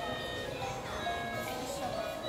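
An electronic melody of held notes playing from a light-up musical Christmas village display.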